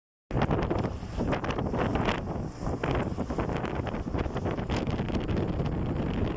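Wind buffeting a phone microphone in a moving car, a gusty rumble over the car's road noise, after a brief silent gap at the very start.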